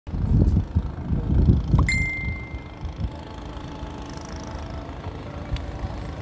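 Outdoor background noise with low rumbling for the first two seconds, then a single short high-pitched ring, like a bell, just before two seconds in that fades within about a second, followed by a steady, quieter background hum.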